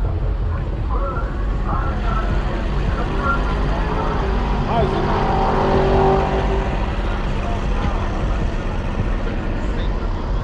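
Low steady rumble of a car engine running at idle, with people talking in the background.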